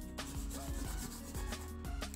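Water-soluble crayon scribbled over card stock in quick, repeated short strokes, a dry rubbing scratch on paper.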